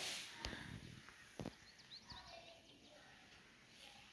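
Very quiet room tone with two faint clicks in the first second and a half, and a few faint high chirps a little later.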